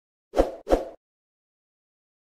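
Two short, sudden sound effects in quick succession, less than a second in, as text animates onto a video end screen.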